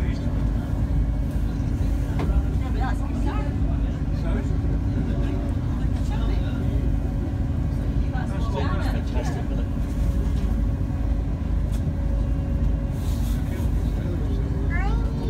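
A canal boat's engine running steadily under way, a low rumble with a constant hum, heard from inside the boat's cabin.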